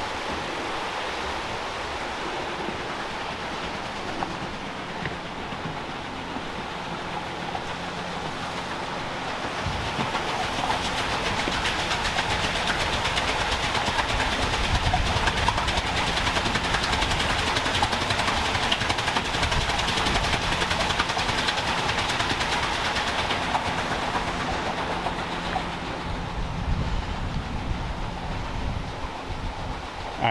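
The Great Laxey Wheel, a 72-foot working water wheel, turning: a steady rush of water spilling through its buckets. It grows louder about ten seconds in and eases off near the end.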